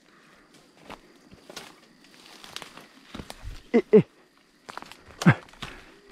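Footsteps through dry grass and brush, with faint crackles and rustles of twigs underfoot. A man calls "hey, hey" about four seconds in, and there is another short call near the end.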